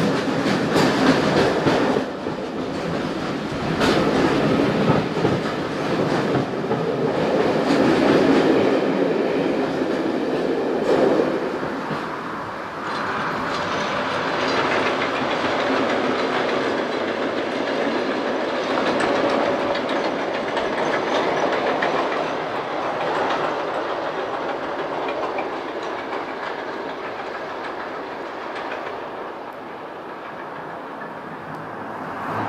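Train passing on a heritage line: wheels clickety-clack over the rail joints with a heavy rumble for the first dozen seconds, then a steadier, softer running sound that fades away near the end.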